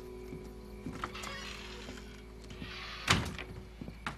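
Soft, sustained background music with small rustling and handling noises, and a single loud thump about three seconds in.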